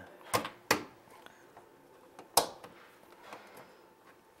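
A power strip being pressed into the perforated rails of a wiring enclosure: three sharp clicks, two close together near the start and one more past the halfway point.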